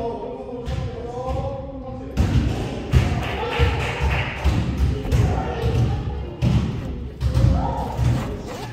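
A basketball bouncing on a hardwood court: low thuds come irregularly, about two a second, over music and voices.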